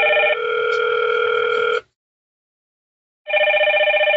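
Hikvision video intercom call ringing: an electronic ring of steady tones that shifts pitch partway through, stops for about a second and a half, then starts again near the end.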